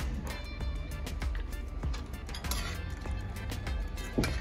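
Background music, with a few faint clicks over it.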